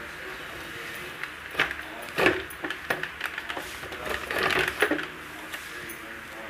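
A string of light clicks and knocks from a steel mixer-grinder jar and its plastic clip-on lid being handled and fitted before grinding, with a brief rattly cluster about four seconds in; the motor is not running.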